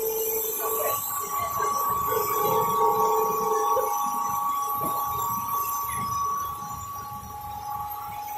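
Paper pulp egg tray forming machine running: steady whining tones over a low rumble, one lower tone cutting out about a second in and again about four seconds in.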